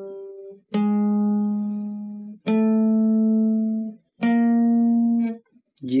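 Acoustic guitar played one note at a time on the D string, frets five to eight, one finger per fret. One note rings out, then three more are plucked slowly, each a step higher than the last and held about a second and a half, with short silent gaps between.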